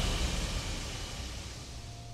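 A hiss-like noise wash fading away steadily, with no pitched notes in it: the dying tail of a swell or transition effect in the backing music.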